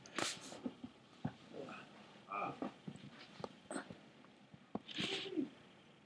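Quiet, scattered clicks and knocks from a handheld laptop being moved, with a few brief, soft murmured vocal sounds and a breathy hiss near the end.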